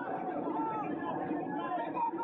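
Several voices talking and calling out at once, overlapping into chatter with no one voice standing out.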